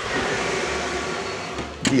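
Cream sauce simmering in a pan on the hob, giving a steady hiss that eases off slightly toward the end.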